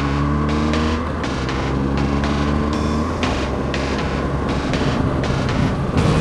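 BMW R1200GS boxer-twin engine running under way, its pitch dropping about a second in as it changes up a gear, then fading. A steady beat of background music plays over it.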